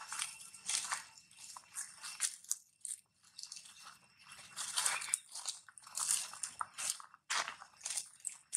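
Footsteps crunching and rustling through dry fallen leaves, in an irregular run of crackles with a couple of brief pauses.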